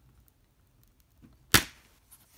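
A plastic eco-style Blu-ray case snapping open: one sharp, loud snap of its latch about one and a half seconds in.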